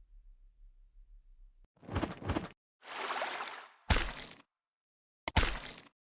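Animated end-screen sound effects: a double hit about two seconds in, a whoosh, another hit, then a sharp burst of clicks near the end, after a faint low hum at the start.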